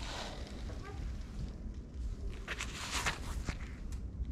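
Gloved hands pressing and working gritty bonsai soil mix around a tree's base, the granules crunching and scraping in a few short strokes late on, as the roots are seated into the mix.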